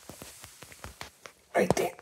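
Handling noise on a phone's microphone: light clicks and clothing rustle as the phone is moved about. About one and a half seconds in comes a short, loud breathy sound close to the microphone, like a whisper.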